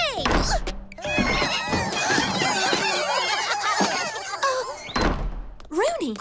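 Cartoon sound effects of a swarm of small magical creatures, the Slip Shards, chattering in many quick, high, overlapping voices for a few seconds, over background music. A dull thunk comes near the start and another about five seconds in.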